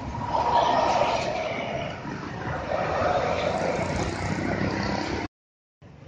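A heavy cargo truck and a tour bus passing close by: continuous engine and tyre noise, loudest about a second in, which cuts off suddenly near the end.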